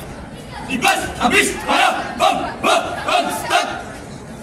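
A squad of young marchers shouting a chant together: about seven short, loud shouted syllables at an even beat, starting about a second in, over a murmuring crowd.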